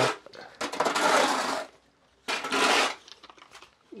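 A metal hoe blade scraping across the wet dirt floor of a corral, twice: the first scrape is about a second long and the second is shorter.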